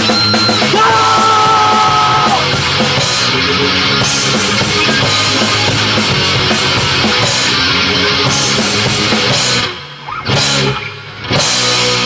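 Hard rock band playing loud distorted electric guitars, bass and drum kit, with no singing. Near the end the band twice cuts out briefly, with a short hit between the breaks, then comes back in.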